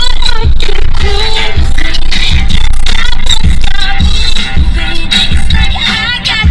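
Music with singing over a steady beat of about two thumps a second, playing on the car's satellite radio.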